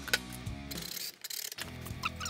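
Cordless drill driving screws to fasten a speaker grille to a golf cart body: a sharp click near the start, then a short whirring run, over background music.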